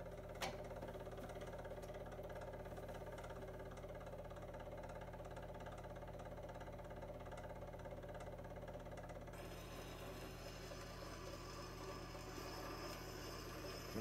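Spring-wound motor of an Edison Diamond Disc Phonograph running with a steady mechanical hum as its turntable spins. There is a click about half a second in, and a faint hiss joins about nine seconds in.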